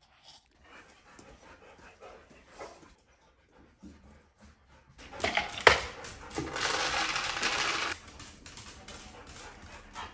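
Dry pet food poured into a metal bowl: a loud, dense rattle of kibble starting about five seconds in with a sharp clink and lasting about three seconds, after a few faint clicks.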